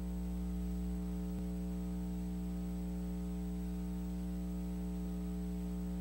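Steady electrical mains hum with a buzzy edge in the recording's audio, holding the same level throughout.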